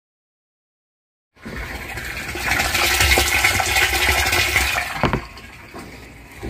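Water rushing into a black plastic rooftop water storage tank. It starts suddenly about a second in and runs loud before easing off, with a single knock about five seconds in.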